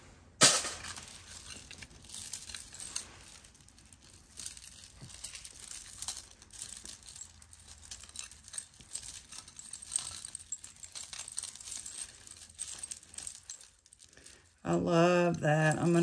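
Tangled costume jewelry being handled: one sharp clatter about half a second in, then a long run of small clicks, clinks and rustles of metal chains and faux-pearl beads as the knot is picked apart.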